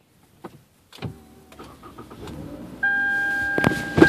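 Inside a car: after about a second of dead silence, a click and the car's low rumble begin, then a loud steady high tone sets in near the end, with a few sharp knocks.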